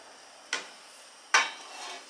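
Two sharp clinks of a kitchen utensil knocking against a dish, a little under a second apart, the second louder.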